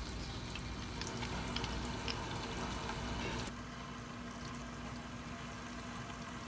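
Faucet water running and splashing into a sink as a small porous brass filter element is rinsed in the stream. The splashing softens a little about halfway through.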